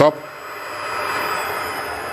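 Air-cooled 3 kW GMT CNC spindle, driven by a Fuling inverter, spinning down after an M5 stop command: a steady rushing hiss with a faint whine that falls in pitch over the second half.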